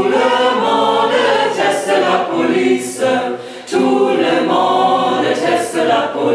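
Background music: a choir singing in long held phrases, with short breaks between them.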